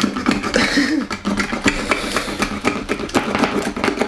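Utility knife blade punching and levering around the lid of a metal food tin, a run of sharp metal clicks and scrapes, several a second.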